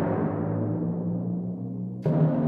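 Sampled cinematic percussion effect from Project SAM's Orchestral Essentials: a deep, ringing hit whose low tones hang on and slowly fade, with a fresh hit striking at the very end.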